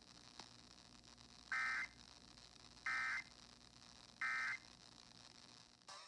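Three short bursts of EAS end-of-message data tones, a little over a second apart, played through a Sangean portable radio's speaker, signalling the end of the IPAWS required weekly test alert.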